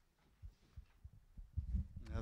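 A microphone being handled: a few soft, low thumps that come closer together and louder near the end.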